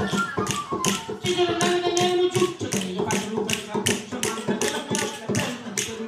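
Live folk dance music from a small band: a flute melody over guitar with a steady, sharp percussive beat of about three strokes a second. The melody falls away about two and a half seconds in, leaving mostly the beat.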